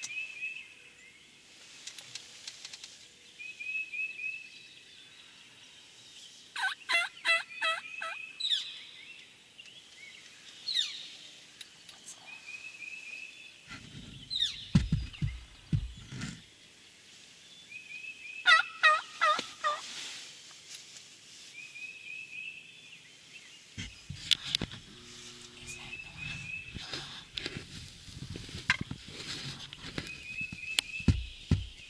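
A wild turkey yelping: two series of quick, evenly spaced yelps, about twelve seconds apart. Short high trills of another bird repeat between them, and there are a few low thumps and rustles near the middle and end.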